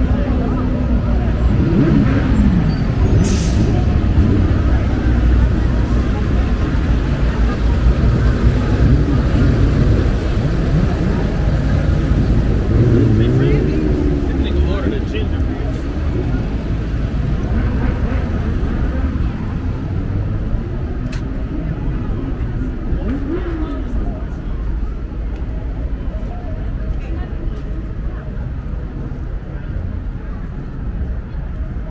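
City street ambience: a steady low rumble of passing traffic with people talking nearby. The traffic grows fainter over the second half. A brief hiss comes about three seconds in.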